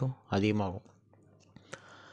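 A man's voice speaking briefly in the first half, then a quieter stretch broken by a single sharp click near the end.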